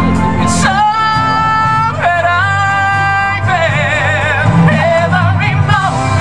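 A woman and a man singing a Broadway ballad duet over musical accompaniment: two long held notes, then a note sung with a wide vibrato.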